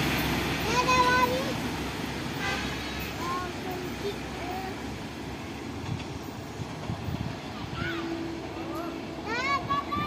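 Airport rail link train running away along the track, its running noise fading steadily as it recedes.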